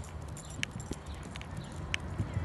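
Walking on an asphalt path: a few light, uneven clicking taps over a low rumble of steps.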